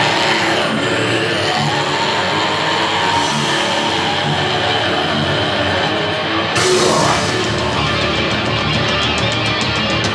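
A heavy metal band playing live through a theatre PA, with distorted electric guitars, bass and drums. About six and a half seconds in, the band comes in harder, and fast regular cymbal strokes follow near the end.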